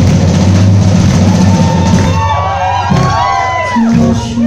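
Loud live rock band, with a drum kit and electric guitar playing an instrumental passage. About halfway through, high gliding, arching notes rise and fall over the drums.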